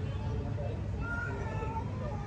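Kittens mewing: a few short, thin, high-pitched calls in the second half, over a steady low background rumble.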